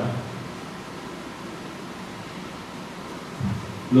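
Steady hiss of room noise, like a fan or ventilation, in a pause between spoken sentences, with a brief sound about three and a half seconds in.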